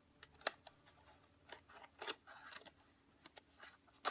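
A few faint, irregular small clicks with light rustling: a yarn needle and yarn being worked through loops on bobby pins set around a plastic cup loom.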